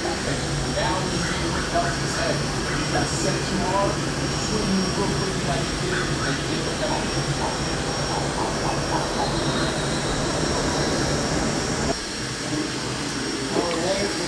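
Creality CR-10 SE 3D printer running a fast print: a steady whir of its fans and stepper motors as the print head and bed move rapidly back and forth.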